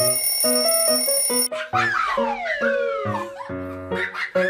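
A cartoon alarm-clock ring, a steady high bell sound, over bouncy background music, stopping about a second and a half in. After it the music goes on, with several falling glides in pitch.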